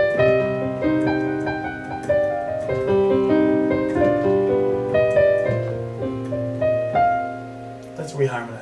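Digital keyboard with a piano sound playing a classical-style passage of chords and moving melody notes, one of the chords being a G7 (dominant seventh). The chords change every half second to a second, and the playing thins out near the end.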